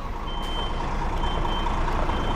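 Lorry's reversing alarm beeping, three high, even beeps about half a second long, roughly one a second, over the steady low running of the truck's diesel engine as it backs up slowly.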